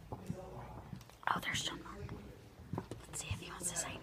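Hushed whispering, in short breathy bursts.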